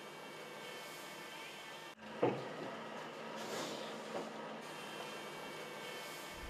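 Faint steady mechanical noise of a heavy truck creeping slowly forward. It breaks off for a moment about two seconds in, and a single short knock follows just after.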